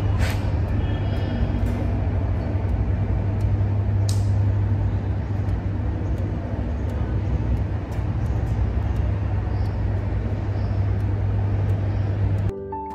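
A steady low hum and rumble that runs unbroken, with a few faint clicks and two brief swishes, one near the start and one about four seconds in.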